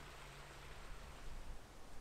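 Faint steady hiss of low background noise with no distinct event.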